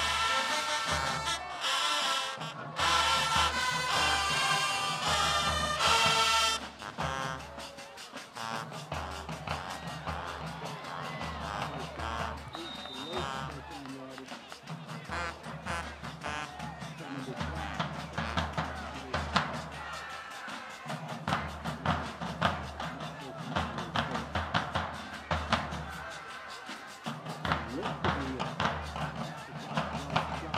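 High school marching band playing a loud brass-and-drum tune that cuts off about six seconds in. After that, quieter drum hits and crowd voices carry on.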